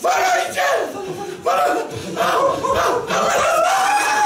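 Two men shouting together on stage in a run of long, loud cries without words, four in a row, each about a second long, the last rising in pitch.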